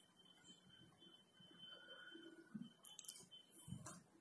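Near silence, with faint soft stirring and a couple of light clicks from a wooden spatula working a thick white sauce in an iron kadai.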